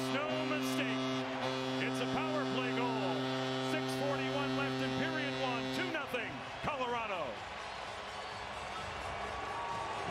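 Hockey arena goal horn sounding one long steady note that cuts off about six seconds in, over a cheering, shouting and clapping crowd; the crowd noise carries on after the horn stops.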